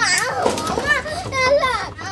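A young girl crying out in a high-pitched voice.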